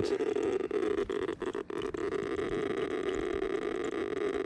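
Berthold LB 1210B radiation monitor's loudspeaker clicking so fast, somewhere between 120 and 200 counts a second, that the clicks run together into a steady crackle. The rate is about ten times the 18–20 counts a second of background and marks a uranium-bearing piece of copper shale.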